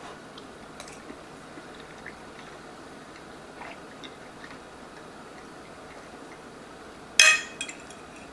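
Quiet room tone with a few faint ticks, then near the end a short, loud scrape of a metal fork against a ceramic plate.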